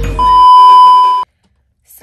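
A single loud, steady, high-pitched electronic beep lasting about a second, cutting off suddenly, over the tail end of music that stops about half a second in.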